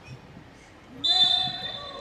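Referee's whistle blown once, a steady shrill tone starting about a second in and lasting about a second, to stop play for a foul and award a free kick.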